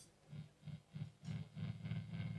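Electric guitar through an amplifier: low notes pulsing about three times a second, then held as a steady drone near the end.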